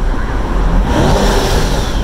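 Twin-turbo C8 Corvette's 6.2-litre V8 running under way with road noise, heard in the cabin with the windows down. About a second in a hiss rises over it, with a faint falling whine inside, for under a second.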